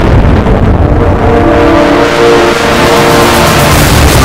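Loud rushing whoosh sound effect of a TV channel's ident, with a few held tones in the middle, leading into the ident's music.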